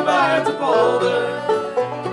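Live acoustic bluegrass band playing: acoustic guitars, mandolin and banjo, with singing that ends a line in the first second before the instruments carry on alone.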